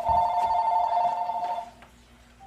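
A phone's electronic ring sounding as two steady pitches together for about a second and a half, then stopping: an incoming call.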